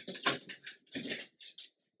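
Paper rustling and scraping in four or so short bursts as hands smooth and shift a stack of old book pages.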